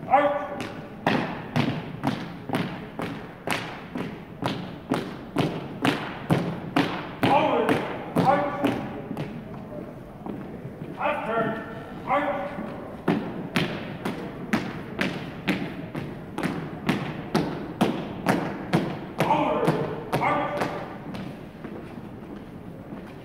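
Marching footsteps of a four-person color guard on a hardwood gym floor, heels striking in unison about twice a second. A voice shouts short drill calls every few seconds.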